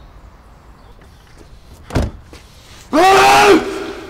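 A car door shuts with a short thump about halfway through, followed a second later by a loud, held, pitched sound lasting under a second that rises at its start and drops away at its end.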